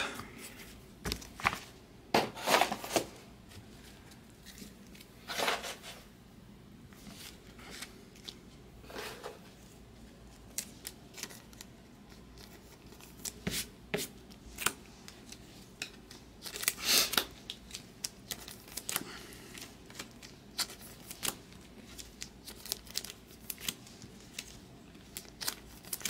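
Baseball cards being handled and sorted by hand on a table: a string of small clicks and flicks, with a few louder paper-like swishes, the longest about seventeen seconds in.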